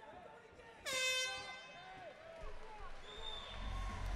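A single air horn blast about a second in, trailing off over the next second or so: the signal that a round of an MMA fight has ended.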